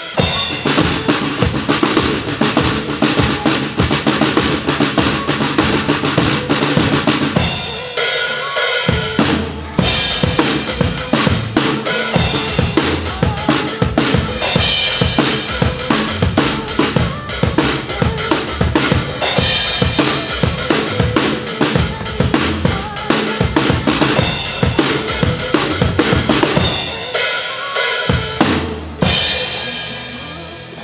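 Acoustic drum kit played fast and steadily, bass drum and snare strokes with cymbals, over recorded backing music. The playing thins out briefly about eight seconds in and again near the end.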